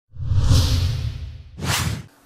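Whoosh sound effects of an edited opening transition: a long rushing swell with a low rumble under it, then a second, shorter and brighter whoosh near the end.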